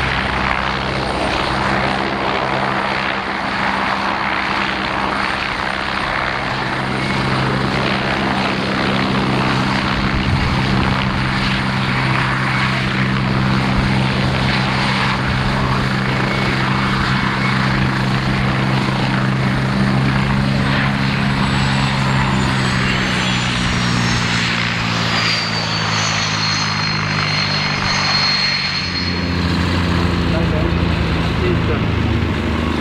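Military turbine helicopter running close by, a steady rotor and engine drone with a high turbine whine. From about two-thirds of the way through, the whine falls steadily in pitch.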